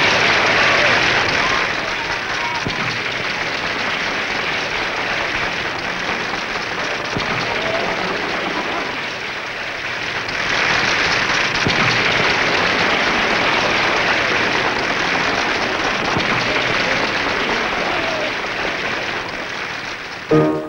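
Theatre audience applauding. The clapping is loudest at first and eases after a couple of seconds, dips about halfway through, swells again just after, and tapers off near the end.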